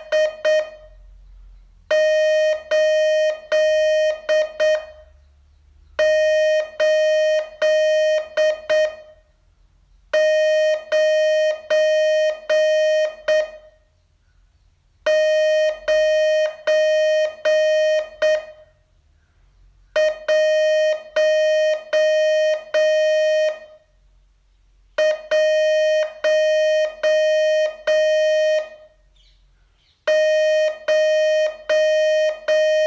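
Morse code sent as a single steady tone of about 600 Hz, keyed in dots and dashes. It comes in runs of a few characters lasting about three to four seconds each, with a pause of about a second between runs.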